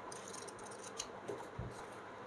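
A paperback manga volume handled and turned over in the hands: faint crisp ticks and rustles of the cover and pages, with a soft low thump about one and a half seconds in.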